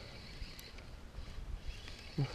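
Spinning reel being wound by hand, faint, with a few light clicks over a low rumble.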